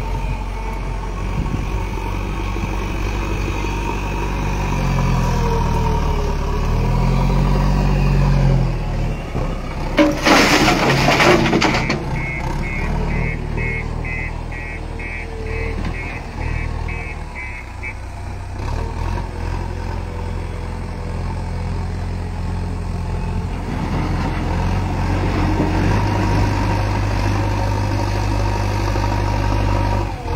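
Diesel engines of a JCB backhoe loader and a tractor running under load while digging, the revs rising and falling. About ten seconds in comes a loud burst of noise lasting a second or so, followed by a rapid, evenly pulsed electronic beeping for about six seconds, like a reversing alarm.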